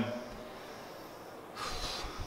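A quiet pause, then a short, sharp breath through the nose, a sniff or snort, near the end.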